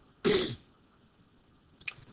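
A person clearing their throat once, briefly.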